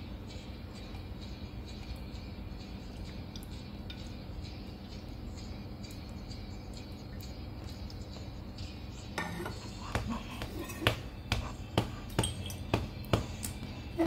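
Steady low background hum, then from about nine seconds in a run of light clinks and knocks, a few a second, as a plastic tumbler is handled.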